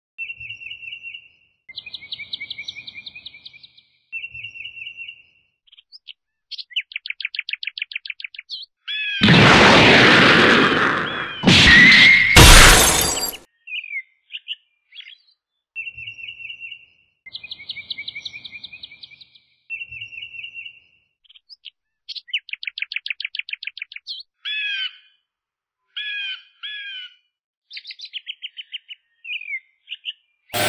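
Bird chirping and fast trills in short phrases with silent gaps between them, repeating as a loop. About nine seconds in, two loud bursts of noise lasting some four seconds break in, the second with a rising whistle inside it.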